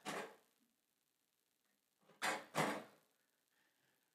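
A stainless steel pump motor unit being set down onto a stainless steel filter cart: one short metal clunk and scrape a little over two seconds in.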